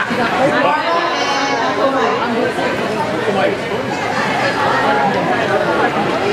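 Chatter of many guests talking at once in a large hall, several voices overlapping with no one voice standing out.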